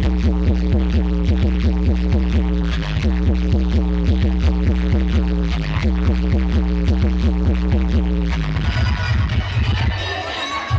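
Loud DJ dance music from a street sound system, with a heavy bass beat repeating in a steady pattern. About eight and a half seconds in the bass line breaks off and a higher, busier part comes in.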